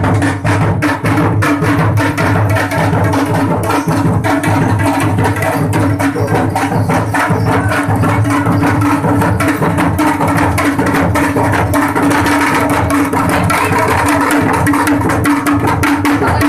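Hand drums beaten in a fast, dense rhythm over a steady drone: Indian procession music.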